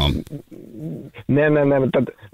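A man's drawn-out hesitation sound, a steady 'hmm', over a telephone line, lasting about half a second and starting a little over a second in.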